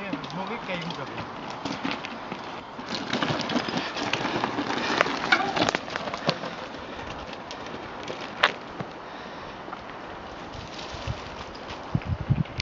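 Mountain bike riding down a loose, stony trail: tyres rolling over rocks, with scattered clicks and rattles of stones and bike parts. It is loudest from about three to six seconds in.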